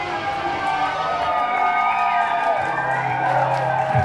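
Electric violin playing a bowed melody with sliding pitches over an electronic bass line in a live drum and bass track.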